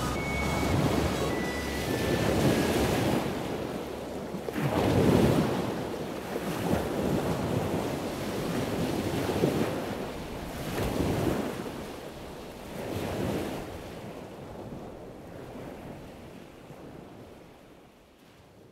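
Ocean surf: waves wash in and recede in repeated swells a couple of seconds apart. The swells grow quieter and fade out toward the end, while the last few notes of music die away in the first seconds.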